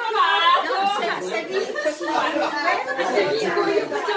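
Several people talking over one another in Italian, lively chatter at a table in a large room, with one woman's voice rising high in an exclamation at the start.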